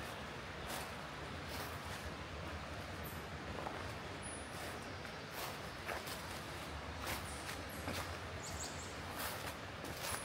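Footsteps crunching through dry leaf litter at a steady walking pace, about one step a second, over a low steady hum.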